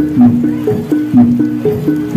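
Javanese jaranan dance accompaniment music: a short descending figure of three held pitched notes repeats about once a second, with a percussive stroke at each note change.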